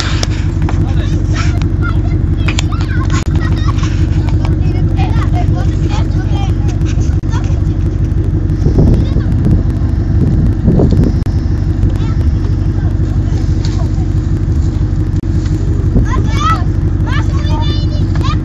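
A car engine running steadily, with people's voices calling out over it at times.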